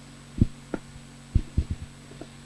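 A few short, soft low thumps over a steady electrical hum from a church sound system, the kind of handling and movement noise picked up as a person sits down on a plastic chair near live microphones.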